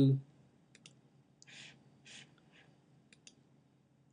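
Faint computer mouse clicks: a quick pair a little under a second in, a single click, and another quick pair near the end, with a few soft puffs of noise between them.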